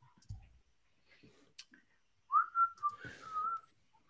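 A person whistling a few short, wavering notes, starting a little after two seconds in and lasting about a second and a half, with a few faint clicks before it.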